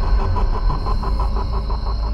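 A loud, deep rumbling sound effect with a fast, even fluttering pulse, used as a dramatic tension effect.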